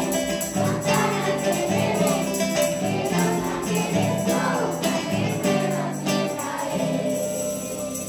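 Children's choir singing a Christmas song over an accompaniment with jingle bells and a steady beat; the music thins out near the end.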